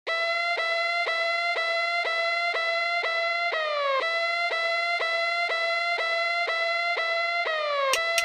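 Intro of an instrumental trap beat: a bright, siren-like synth lead repeating one note about twice a second, with a falling pitch glide closing each four-second phrase. No drums play under it.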